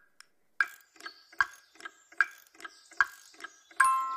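Clock ticking in an even tick-tock, a loud tick about every 0.8 seconds with a softer tock between. Near the end, bright ringing chime notes like a glockenspiel come in.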